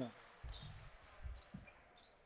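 A basketball being dribbled on a wooden gym floor: a few faint, short bounces.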